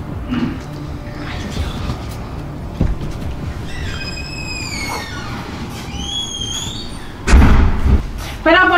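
Door hinge squeaking as the door is swung to and fro: a drawn-out squeal falling in pitch about four seconds in, a shorter rising one about six seconds in, then a loud thud as the door is slammed near the end. The hinge still squeaks although it was greased.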